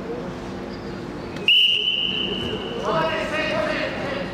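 Referee's whistle blown once, a sudden long high blast starting about a second and a half in and holding for about a second and a half while dropping slightly in pitch, the signal that restarts the wrestling bout. Raised voices follow near the end.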